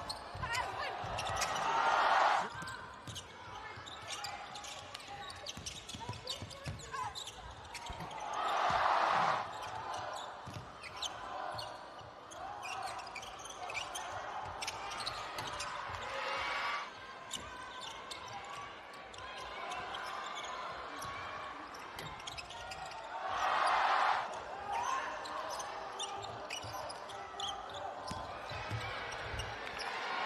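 Basketball game sound in an arena: a ball bouncing on the hardwood court and short sharp court noises over a steady crowd murmur. The crowd swells loudly three times, about two seconds in, around nine seconds, and again past twenty seconds.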